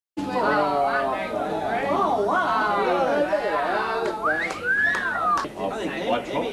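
Several voices, adults and children, chattering over one another without clear words. About four seconds in comes a high whistled note that slides up and then arches over and falls.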